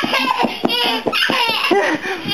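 A baby laughing in a string of short, high-pitched bursts.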